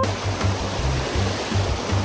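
Floodwater rushing steadily over rocks in a stone-lined channel, a loud continuous wash, with the bass of background music pulsing underneath.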